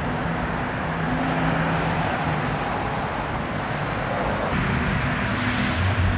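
Steady road traffic noise with a low hum of running vehicle engines.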